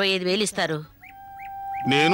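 A line of dialogue ends, then about a second in a flute in the background score starts a long, steady held note. Three short rising chirps sound over the note.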